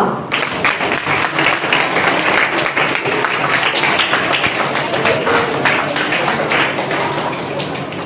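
An audience clapping: a dense, steady patter of many hands that eases off a little toward the end.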